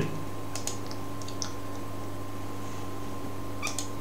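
Steady low electrical hum of the recording setup, with a few faint short clicks of a computer mouse as the program window is resized.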